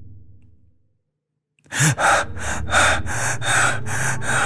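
A low ambient drone fades out, and after a brief silence rapid, heavy panting breaths start, about four a second, as of a frightened person gasping for air.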